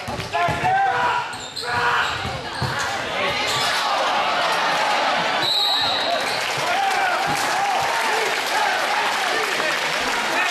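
Basketball dribbled on a hardwood gym floor amid crowd voices and shouts. A short referee's whistle blast comes about five and a half seconds in, followed by steady crowd noise.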